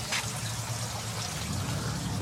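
Water trickling steadily into the fish tank of an IBC tote aquaponic system, over a low steady hum.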